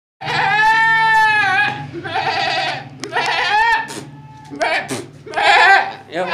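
A man's voice imitating the bleating of a young goat: about five wavering bleats, the first held for more than a second and the later ones shorter.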